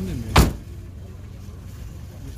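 A single sharp knock on the door of a Daewoo Damas minivan, about half a second in.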